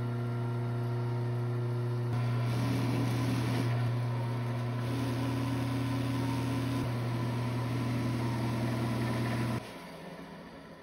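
Lathe motor running with a steady electric hum, driving spinning buffing wheels; from about two seconds in a rougher rubbing noise joins it as the pen is held against a wheel. The hum stops suddenly near the end.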